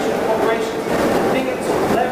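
Speech from an off-microphone speaker in a large, echoing room: an audience member asking a question, too indistinct for the words to be made out.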